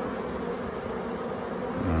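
Honeybees buzzing steadily around an open hive.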